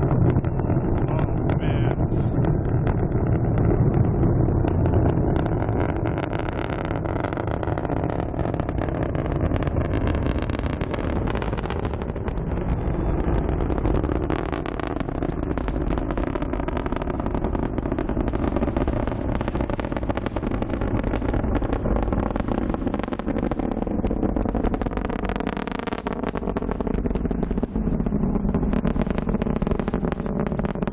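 Rocket engines during ascent, heard from the ground: a steady, crackling rumble with a slowly shifting hollow tone, fading slightly as the rocket climbs away.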